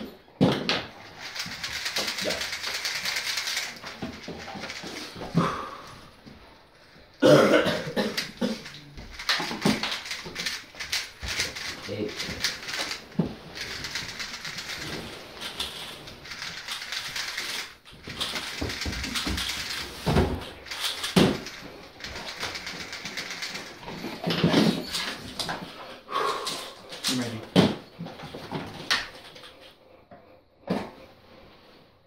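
3x3 speedcubes being turned fast by hand: quick runs of plastic clicking and clattering that come in spurts of a few seconds, with scattered sharper knocks as cubes and hands hit the table and timer.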